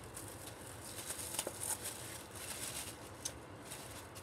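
Faint rustling and a few light clicks of a plastic bag and craft items being handled.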